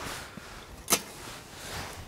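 A single short, sharp click about a second in, over faint outdoor background hiss.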